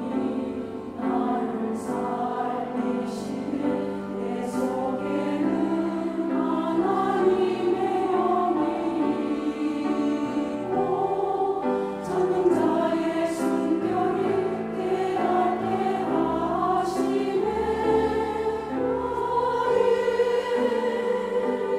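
Church choir singing an anthem in Korean, sustained notes moving in steady steps.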